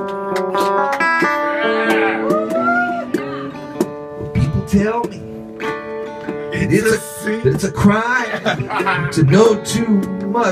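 Live guitar music with a man's singing voice: sustained, picked guitar chords and notes under a wavering vocal line.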